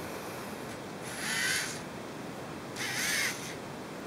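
Two harsh bird calls, each about half a second long and about two seconds apart, with a wavering pitch, over a steady background hiss.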